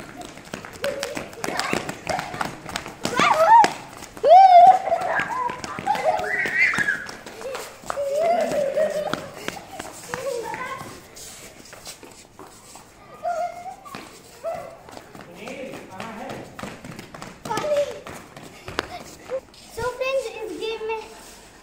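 Children shrieking, laughing and calling out during a running game of tag, with quick footsteps slapping on a stone floor. The loudest squeals come about three to five seconds in.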